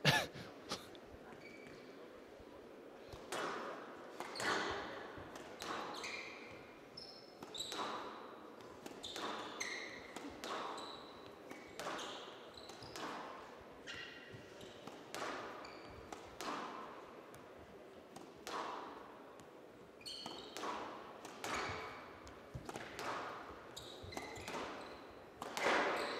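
Squash rally on a glass-walled court: the ball is struck by rackets and smacks off the walls about once a second, with short squeaks of court shoes on the floor between the hits.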